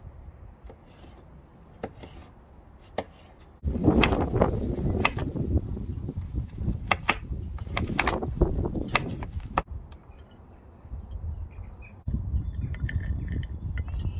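Chef's knife chopping carrots on a wooden cutting board. A few scattered knocks at first, then a run of quick knife strikes over a low rumble from about four seconds in until nearly ten seconds, then quieter.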